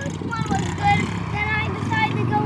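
Small pit bike engine idling steadily, a low, even running note.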